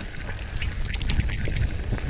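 Rocky Mountain electric mountain bike rolling fast down a loose gravel trail: a steady low wind rumble on the camera microphone, with irregular clicks and rattles from the tyres on stones and the bike's parts.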